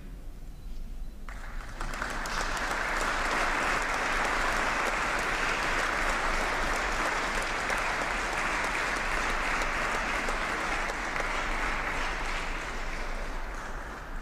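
Audience applauding: a dense, steady clapping that starts about a second and a half in and fades out near the end.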